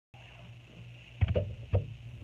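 Steady low hum with a few soft knocks and rustles from about a second in, typical of handling noise on the recording device.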